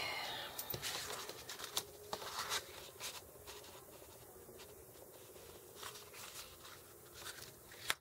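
Faint rustling and sliding of paper and cardstock as a scrapbook page is picked up and set down on a tabletop, with a few short scrapes, most of them in the first couple of seconds.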